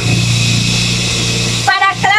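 A steady low engine hum, like a motor vehicle running nearby, with a steady hiss over it. A woman's speech comes in near the end.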